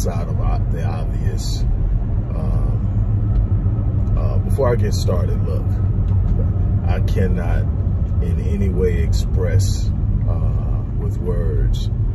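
A man talking inside a moving car's cabin, over the steady low rumble of the car driving on the road.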